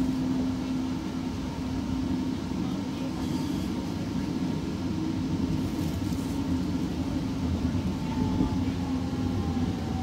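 Inside an Alstom Citadis Spirit light rail car running on the Confederation Line: a steady rumble of wheels on rail with a low hum. From about eight seconds in, a faint whine slides down in pitch as the train slows for a station.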